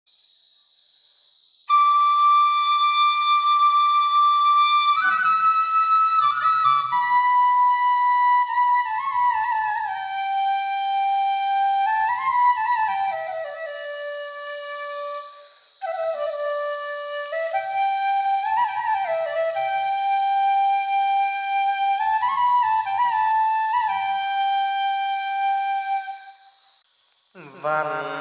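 Slow solo flute melody of long held notes with slides between pitches. It comes in about two seconds in and breaks off briefly about halfway through.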